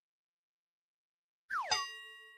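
Near the end, a cartoon sound effect for the balance scale tipping: a quick falling swoop that ends in a bright metallic ding, ringing on and fading.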